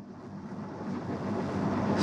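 A rushing noise through the microphone, growing steadily louder over about two seconds.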